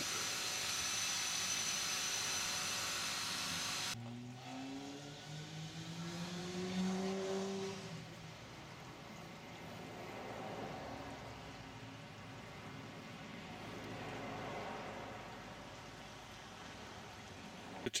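A car engine on the road speeding up, its pitch rising steadily for about four seconds, then fading into quieter road and outdoor noise. Before that, a steady hiss cuts off abruptly about four seconds in.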